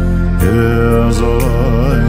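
Bhutanese Dzongkha prayer song (choeyang) sung by a lama: a voice starts a new held note about half a second in and ornaments it with a wavering turn near the end, over a steady low drone and faint regular percussion ticks.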